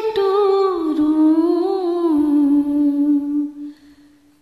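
A woman's unaccompanied voice sustaining one long wordless sung note, humming-like. It glides down in pitch within the first second, holds with a slight waver, and fades out shortly before the end.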